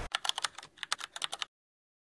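Rapid, irregular clicking of typing on a computer keyboard, cutting off abruptly about one and a half seconds in.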